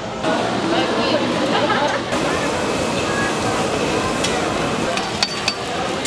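Busy market crowd chatter, then, after a change about two seconds in, oil sizzling on a flat griddle where long hotteok are frying, with a few sharp clicks of utensils near the end.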